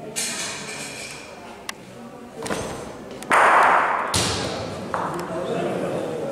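Bocce balls knocking on an indoor court: a few sharp clicks, and a louder noisy burst a little past halfway followed by a lower rumble. Voices carry in a large hall behind.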